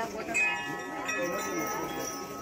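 Metal chimes ringing: several clear, high tones struck about a third of a second in and again about a second in, each ringing on and overlapping the others.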